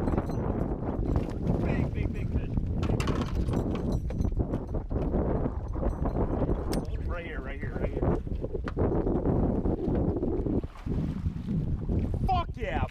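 Wind buffeting the camera microphone in a continuous heavy rumble, with brief excited voices about seven seconds in.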